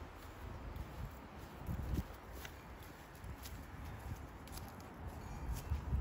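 Footsteps walking over grass and dry leaves: a few irregular soft thuds with faint light clicks.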